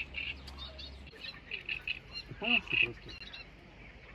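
Birds chirping repeatedly in quick short notes, with one louder call about two and a half seconds in.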